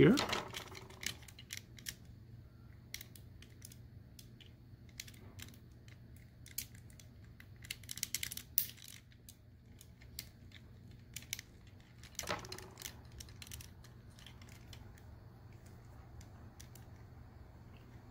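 Small, irregular clicks and taps of hard plastic as a plastic Transformers action figure is handled and a small clip-on machine gun accessory is fitted onto it.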